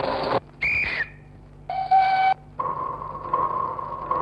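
1948 musique concrète built from spliced railway recordings. A noisy rattling passage cuts off abruptly, then come two short whistle blasts, the first gliding down in pitch and the second a chord of several steady tones. A steady high tone sets in near the end.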